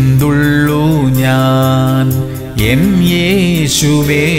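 A man singing a slow Malayalam Christian devotional song, holding one long note for over two seconds and then bending through a short wavering melodic turn.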